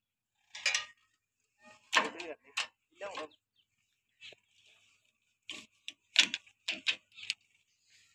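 Brief, scattered snatches of a voice with silent gaps between them; the tractor engine is not running.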